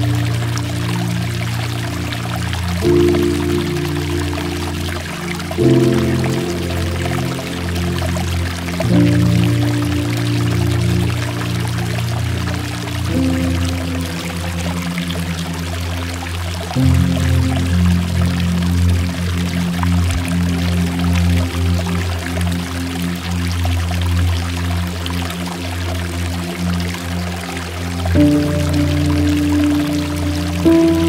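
Slow ambient music of sustained chords that change every few seconds, over a steady patter of water trickling and dripping off mossy rock.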